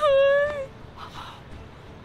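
A woman's high, held wailing cry of distress, lasting about half a second and dropping in pitch as it ends.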